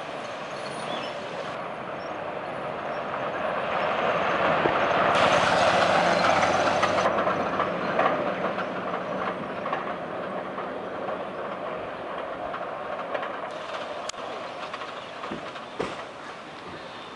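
An open-top jeep's engine and tyres on the road as it drives by, swelling to its loudest about five to six seconds in and then easing back to a steady, lower rumble.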